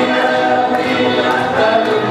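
A group of people singing a song together in chorus, over live instrumental accompaniment.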